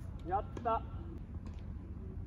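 A voice calling out twice in short, quick syllables, about half a second apart, over steady outdoor background noise.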